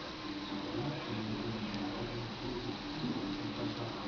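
Quiet indoor room tone: a steady hiss with a faint low hum that comes and goes, and no distinct sound events.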